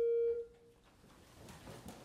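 A held organ note stops about half a second in. Faint rustling and shuffling follow as people rise from wooden choir stalls.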